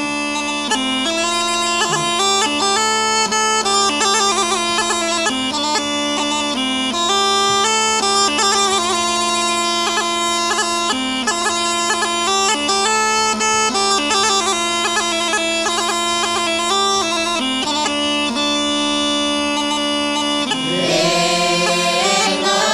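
Bulgarian Rhodope bagpipe (kaba gaida) playing a lively ornamented melody over its steady low drone. Just before the end a group of voices comes in singing.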